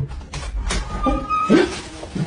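A dog giving a few short vocal calls, the loudest about one and a half seconds in, over a steady hiss.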